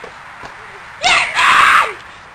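A young person's loud scream, starting about a second in and lasting close to a second.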